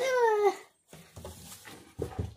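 A short, high-pitched vocal cry from a child, falling in pitch over about half a second, followed by faint knocks and handling noises.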